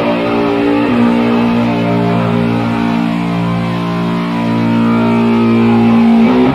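Live sludge-metal band: distorted electric guitar and bass holding long, sustained notes, stepping down in pitch about a second in.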